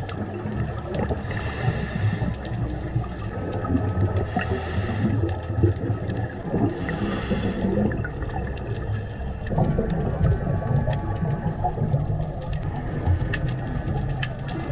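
Underwater sound through a GoPro housing of a scuba diver breathing on a regulator: three short hisses of inhalation in the first eight seconds, with low bubbling and rumbling of exhaled air throughout. Faint clicks are scattered across the whole stretch.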